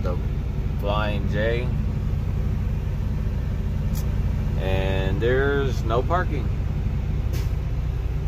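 Semi truck's diesel engine running with a steady low drone, heard inside the cab. A man's voice comes in briefly about a second in and again around five seconds in, and there are a couple of short ticks.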